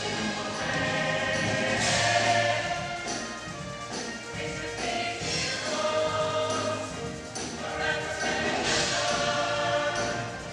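Show choir of mixed voices singing in full harmony over instrumental accompaniment with a held bass line, swelling louder about two seconds in and again near the end.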